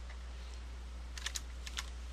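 Computer keyboard keys being typed: a single keystroke just after the start, then a quick run of several clicks a little past a second in.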